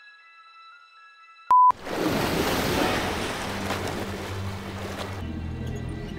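Quiet keyboard music cuts off about a second and a half in with a short, loud single-pitch beep, then the wash of ocean surf follows, with a low steady hum beneath it from about halfway through.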